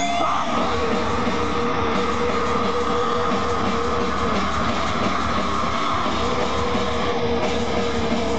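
A live band playing loud, dense noise through a PA: a steady wall of distorted electric guitar and electronics with a held drone and a low rumble underneath. The texture changes abruptly just after it begins.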